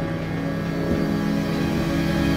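Horror-film score drone: sustained low tones with a swelling hiss-like wash over them.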